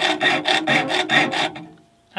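Junior hacksaw sawing through metal on a bandsaw's upper blade guide assembly: quick back-and-forth strokes, about four or five a second, with a ringing tone through them. The sawing stops about one and a half seconds in.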